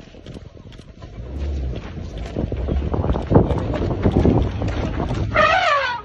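A vehicle engine running hard under load, with wind on the microphone, rising in level through the middle seconds. Near the end comes a short, wavering, high-pitched cry.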